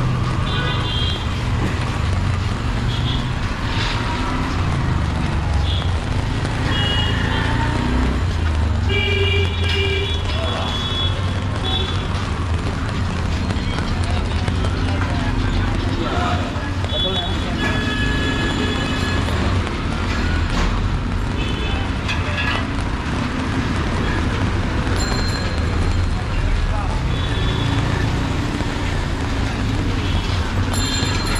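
Busy street ambience: a steady traffic rumble, passers-by talking, and short vehicle horn beeps several times.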